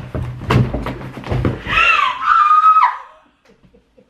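A woman laughing in short bursts, then letting out one long high-pitched squeal that wavers in pitch and cuts off about three seconds in.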